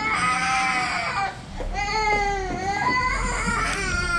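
Baby crying in two long wails, the second starting about a second and a half in: a tired, fussy cry.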